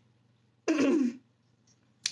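A woman clears her throat once, a short burst a little over half a second in, with quiet before and after it.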